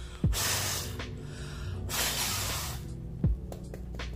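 Two breathy puffs of a woman blowing on her powder blush brush, each just under a second long, over background music with a deep falling bass note now and then.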